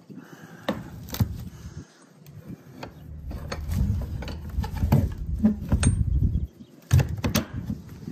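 Horse trailer's gate and door hardware being handled: a series of sharp metal knocks and clanks, the loudest about seven seconds in. Wind rumbles on the microphone through the middle.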